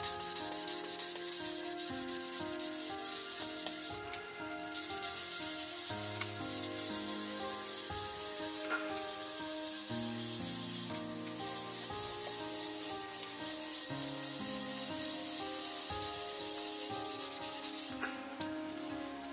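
Cloth rubbing against the rim of a sycamore bowl spinning on a lathe, a steady hiss of friction as spirit stain is rubbed into the wood. Soft background music plays underneath.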